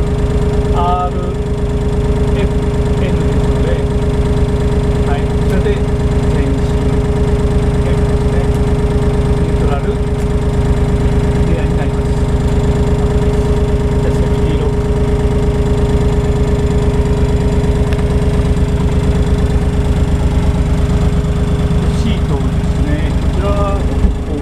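Komatsu WA20-2E wheel loader's 1,200 cc three-cylinder 3D78 diesel engine running steadily at an even speed, heard from inside the cab, with a steady whine over the rapid firing beat.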